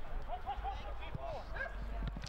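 A dog barking in a few short, quick yaps, about three in quick succession and then a couple more.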